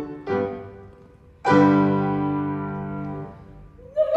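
Piano accompaniment to an opera duet, playing a few short chords and then a loud chord about a second and a half in that rings and slowly fades. A singer's voice comes back in with a held note right at the end.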